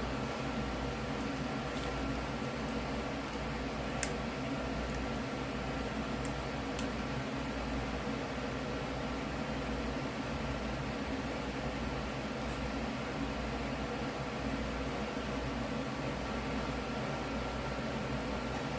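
Steady low mechanical hum of room background noise, with a faint tick about four seconds in.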